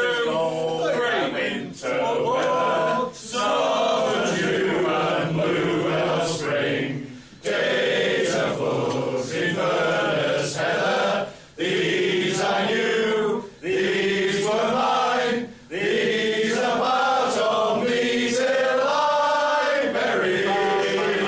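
A group of men singing together without accompaniment, reading from song sheets, in sung phrases separated by short pauses for breath.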